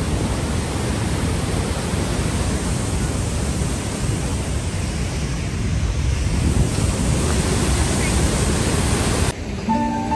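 Steady rushing of white water pouring over a concrete weir waterfall, heard up close. Music cuts in suddenly near the end.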